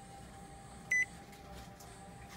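Epson WorkForce printer's touchscreen control panel giving one short, high beep about a second in, acknowledging a tap on a menu item, over a faint steady hum.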